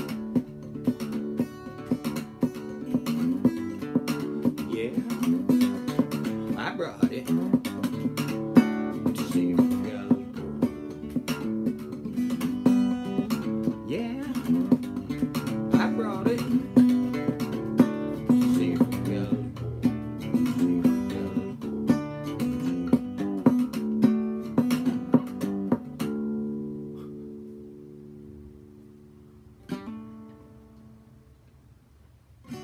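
Small-bodied acoustic guitar played clawhammer style in drop D tuning, a steady run of picked and brushed strokes. About 26 seconds in the playing stops on a final chord that rings out and fades away.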